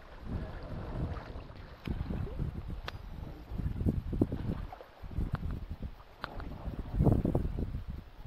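Wind buffeting the microphone on the deck of a small sailboat under spinnaker, in uneven low gusts that rise and fall every second or so, with a few faint sharp clicks.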